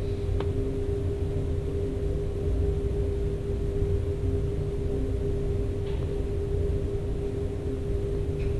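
Steady machinery hum with one constant tone over a low rumble, and a few faint clicks of metal purifier bowl parts being handled, one near the start and one about six seconds in.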